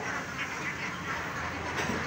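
A cartload of caged young domestic ducks quacking together, a steady jumble of overlapping calls with no single loud one.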